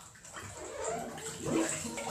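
Water sloshing and bubbling, starting about a third of a second in and going on irregularly.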